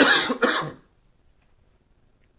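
A man coughing into his hand: two quick coughs in the first second.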